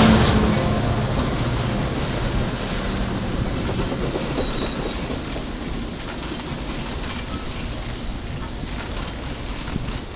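A passing train, most likely a Metra commuter train, with its rumble and wheel noise fading steadily as it moves away. From about seven seconds in, a run of short high pings repeats about three times a second.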